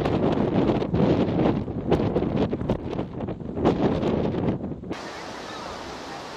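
Wind buffeting the microphone in uneven gusts. About five seconds in it cuts to a quieter, steady hiss of surf far below.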